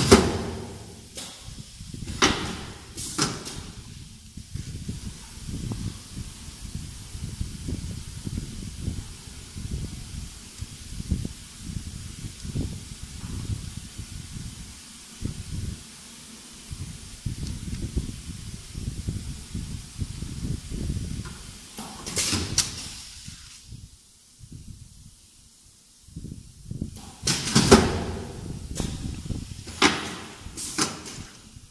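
Short bursts of air hiss from a pneumatic pouch filling and sealing machine: a few near the start, one about two thirds of the way through and a longer one near the end. Between them, irregular low knocks and rustling as filled gel sachets are handled and pulled out of the machine.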